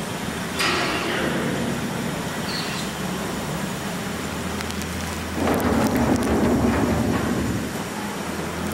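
Sheet-metal barrel rumbling and clattering as it rolls over a concrete floor, with a sharp clatter about half a second in and a louder, longer rumble from about five seconds in until near the end.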